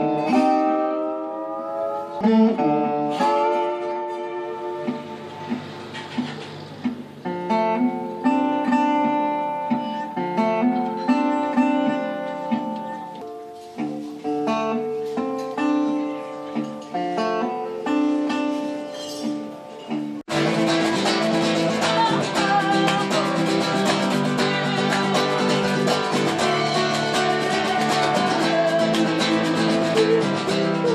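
Solo resonator guitar playing blues, with some notes gliding in pitch near the start. About twenty seconds in it cuts abruptly to a louder band: acoustic guitar strummed over a drum kit.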